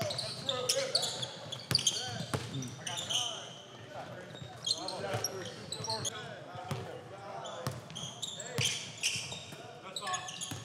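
Basketball dribbled on a hardwood gym floor, with sharp repeated bounces and short high-pitched sneaker squeaks as players cut and move.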